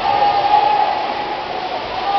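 Steady din of an indoor swimming pool hall during a freestyle race: swimmers splashing, under spectators' sustained shouts of encouragement.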